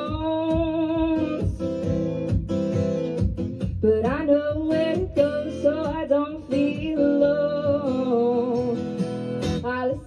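A woman singing a folk song live, with vibrato on her held notes, accompanied by strummed acoustic guitars.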